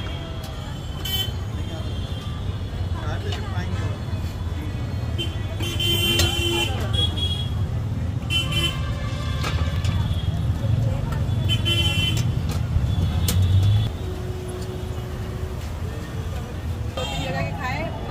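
Street traffic: a steady low engine rumble that swells louder through the middle and drops off suddenly about two-thirds of the way in, with short vehicle-horn toots several times. People talk near the end.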